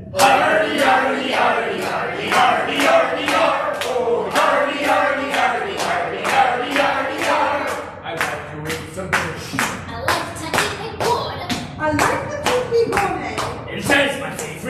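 Hand clapping in a steady beat, about two to three claps a second, from a group keeping time for a sea shanty. Voices sing over the claps through the first half, and the claps stand out on their own toward the end.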